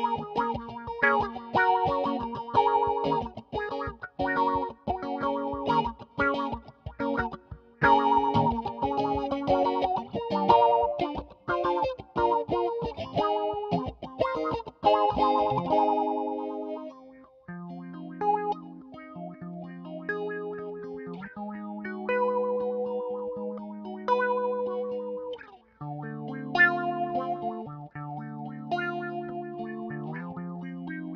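Electric guitar, a custom Jazzmaster, played through an envelope-controlled filter pedal of the Mu-Tron III / Meatball state-variable type into a Yamaha THR10 amp. Fast, rhythmic picked chords give way about halfway through to slower, held notes and chords.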